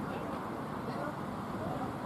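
Steady outdoor background noise, even and unbroken, with faint indistinct voices in the distance.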